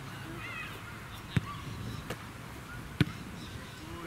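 Two sharp thuds of an Australian rules football being kicked, about a second and a half apart, the second the louder.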